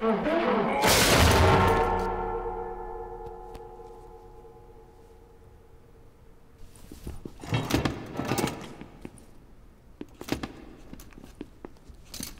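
Loud metallic crash of brass band instruments falling to the stage floor, ringing out and fading over a few seconds. Clusters of smaller clattering knocks follow about seven and ten seconds in.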